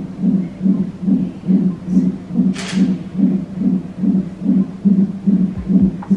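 Fetal heartbeat played by a cardiotocograph (CTG) Doppler monitor: a steady, rapid pulse of about two and a half beats a second, matching the monitor's reading of about 140 beats per minute, a normal fetal heart rate. A brief hiss comes about halfway through.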